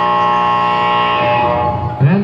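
Basketball scoreboard buzzer sounding one long, steady tone that dies away about one and a half seconds in.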